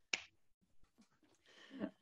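A single short, sharp hand slap about a tenth of a second in, followed by faint rustle and a breath near the end.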